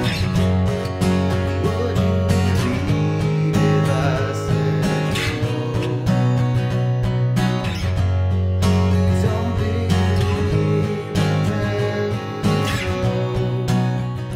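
Ovation Balladeer roundback acoustic-electric guitar played with a capo on the neck: a continuous run of chords and melody notes ringing over sustained low bass notes.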